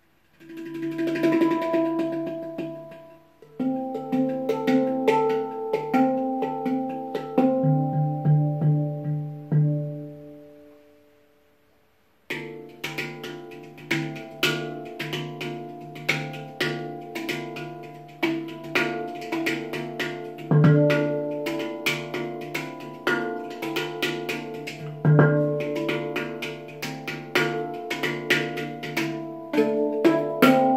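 Handpan played with the hands, its steel notes ringing out. Slow single notes and a deep low note ring and fade away to almost nothing about eleven seconds in. A faster rhythmic pattern of many quick strikes over ringing notes starts suddenly a second later.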